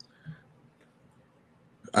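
A near-silent pause in a man's talk, broken by one short, faint throat sound about a quarter second in; his speech resumes at the very end.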